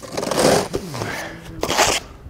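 Steel trowel scraping wet stucco off a mortar board onto a hawk, in two scraping strokes, the sharper one near the end.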